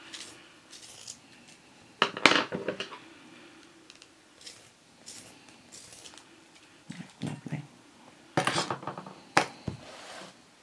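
Derwent Inktense pencil being sharpened in a hand-held sharpener: a few short scraping bursts, the loudest about two seconds in and more near the end, with a sharp click just after the last.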